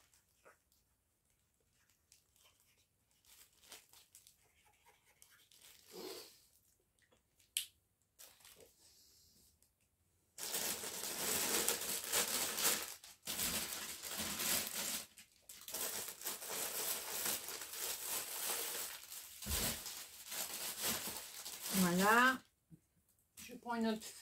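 Clear plastic sleeves of cross-stitch kits crinkling and rustling loudly as they are handled and sorted, for about twelve seconds from near the middle. Before that only faint small scratches, like a felt-tip pen writing on cardboard.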